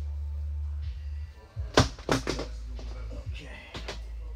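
Sharp clicks and knocks of hands handling parts and test leads on a TV repair bench: a few close together about two seconds in and one more near the end, over a steady low hum.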